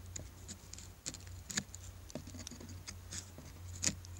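Knife blade scraping and shaving resin-soaked lodgepole pine fatwood from a tree's scar, heard as faint, irregular scrapes and clicks, a little stronger about a second and a half in and near the end.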